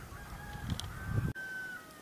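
A rooster crowing faintly in the distance, a thin drawn-out call, over a low irregular rumble on the microphone that cuts off abruptly a little over a second in.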